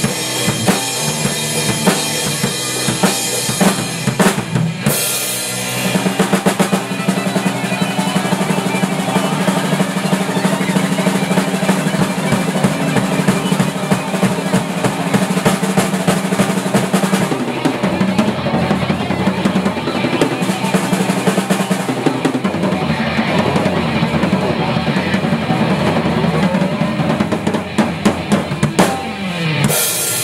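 Rock band of drum kit, electric bass and electric guitar playing an original riff together, loud and continuous, with the drums prominent. The sound fills out about five seconds in, and the song moves into a new section around the middle.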